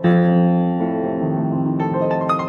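Fortepiano, a copy of an Anton Walter Viennese instrument, playing. A loud chord struck at the start rings and fades, with more notes struck about a second in and again near the end.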